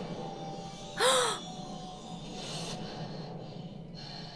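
Quiet, steady dramatic background score from a TV drama episode, with one short, loud gasp about a second in whose pitch rises and falls.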